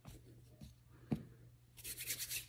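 Faint workbench handling sounds: a single light click about a second in, then a brief dry rubbing near the end as hands rub together, over a steady low hum.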